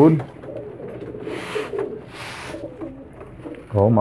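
Domestic pigeons cooing faintly, with two short hissing bursts about a second and two seconds in.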